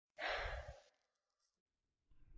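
A woman's short, breathy sigh, about half a second long.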